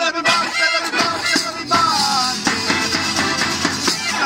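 A Sicilian folk band playing live: an acoustic guitar and an accordion, over an even, rhythmic hand-percussion beat, with men singing in parts.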